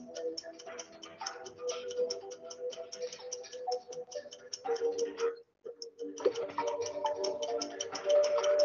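Quiz-game background music with a fast, even ticking beat, playing while the question's countdown timer runs. It cuts out for about half a second just past the middle.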